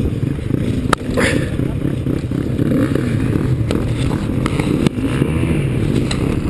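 Off-road enduro motorcycle engine running as the bike rides a rocky dirt trail, with several sharp knocks as it jolts over rocks, loudest about a second in and near five seconds.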